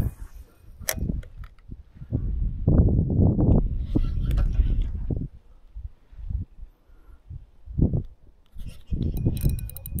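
Wind gusting on the microphone in uneven bursts, loudest a few seconds in, with a sharp click about a second in.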